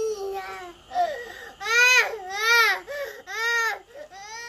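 A young child crying in a run of high, rising-and-falling wails, the three loudest coming one after another in the second half.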